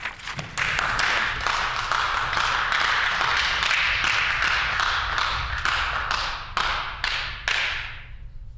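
Members of a legislative assembly applauding, a crowd of hands clapping that starts about half a second in and dies away near the end.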